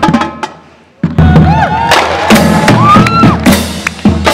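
Marching drumline of snare, tenor and bass drums playing a fast pattern that cuts off about half a second in. After a short pause, loud cheering and whooping voices break out, mixed with scattered drum hits.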